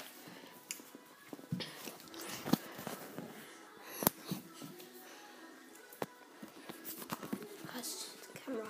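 Handheld phone being moved and handled: scattered knocks, taps and rubbing against the mic, with two sharper knocks about two and a half and four seconds in.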